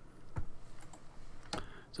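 A few isolated clicks of a computer keyboard and mouse being used, with a low thump about half a second in and sharper clicks near the end.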